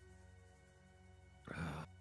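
Faint background music, with one short vocal sound from a man about one and a half seconds in.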